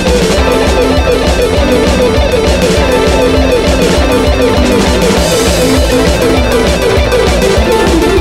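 Electric guitar playing a fast alternate-picked descending four-note figure, repeated over and over on a single string at 200 BPM.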